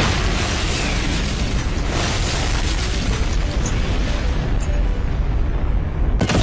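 Cartoon explosion sound effect: a sudden blast that carries on as a loud, deep rumble for about six seconds.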